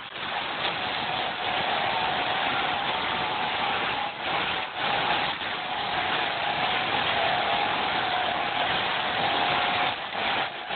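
Volvo 240 driving on a dirt field track, heard from inside the cabin. The engine runs under way with a steady whine that wavers slightly, under a loud wash of road and body noise, and the sound dips briefly a few times around the middle.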